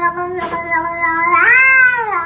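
A grey domestic cat giving one long, drawn-out yowling meow. It grows louder and rises in pitch past the middle, then starts to fall away at the end.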